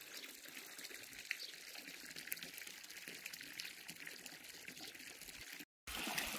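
Faint steady trickle of a thin water jet from an above-ground pool's filter return inlet splashing into the pool, with a brief gap near the end.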